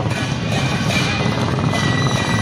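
Motorcycle engines running as the bikes pass close by, mixed with music.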